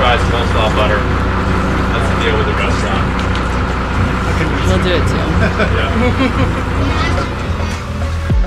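A lobster boat's engine running steadily at low speed, with people talking over it.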